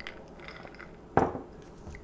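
A person sipping and swallowing an iced drink from a glass, with faint mouth noises, then a short, sudden throaty sound about a second in.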